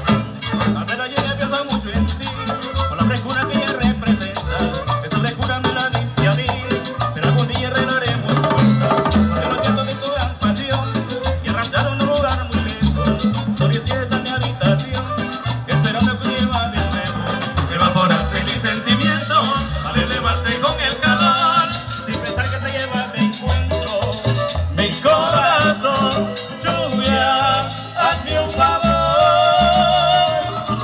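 A chanchona band playing cumbia live: violins carry the melody over a plucked upright bass and percussion with a steady dance beat.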